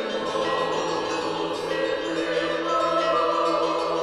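Intro music of choir voices singing long-held chords.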